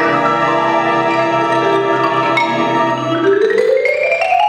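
Marimba played with concert band accompaniment: the band holds a sustained chord under the marimba, then a fast rising run begins a little after three seconds in and climbs to the end.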